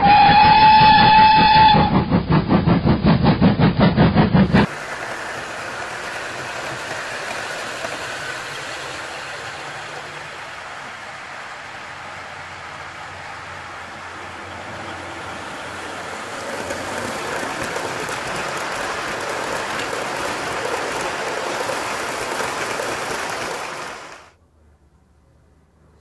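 A recorded train horn sounds one held note for about two seconds, followed by a fast rhythmic pulsing of a full-size train, cut off abruptly at about five seconds. Then comes a quieter, steady whirring hiss of OO gauge model trains running on the layout's track, which grows a little louder from about two-thirds of the way in.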